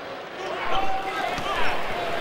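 Basketball game in progress in a large arena: steady crowd noise with the ball bouncing on the hardwood court and sneakers squeaking.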